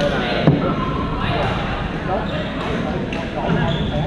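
Badminton rackets hitting the shuttlecock, with one sharp hit about half a second in. Voices echo through a large gym around the strokes.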